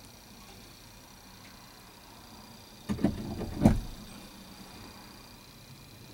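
Quiet car interior with a faint steady background. About three seconds in there is a short clatter, then a single loud, solid thump from the car body as something is shut or knocked against it at the fuel pump.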